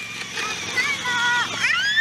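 A young child's high-pitched voice squealing, rising steeply to a held high note near the end, over the low steady hum of an electric ride-on toy scooter.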